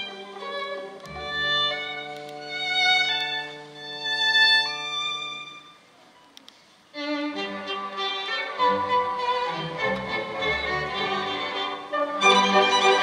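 Orchestral music with a solo violin: held notes over sustained string chords for about six seconds, then a brief pause of about a second. The full orchestra then comes in with the soloist, louder and denser.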